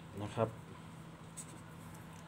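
A pen writing a digit on paper, with a faint, brief stroke past the middle.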